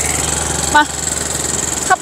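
A small motorcycle engine running close by, a steady hum with a low drone beneath it.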